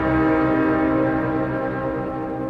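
A full symphony orchestra holds a loud sustained chord, with brass to the fore, that begins to die away near the end. It comes from an old LP recording.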